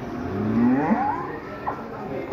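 Cattle lowing at a livestock market: one call that rises in pitch during the first second, with a shorter, fainter call near the end.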